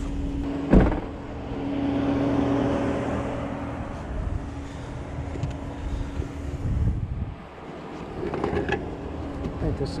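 A single loud thump about a second in, then a motor vehicle's steady hum that swells and fades and stops about seven seconds in, with a few light knocks near the end.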